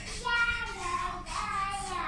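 A young child singing a high, wavering melody in short phrases.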